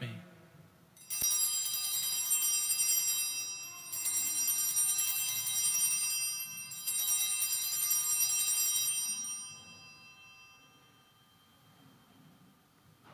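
Altar bells rung three times at the elevation of the chalice, marking the consecration of the wine. Each ringing is a bright shimmer of high tones, the three coming about three seconds apart, and the last dies away a couple of seconds before the end.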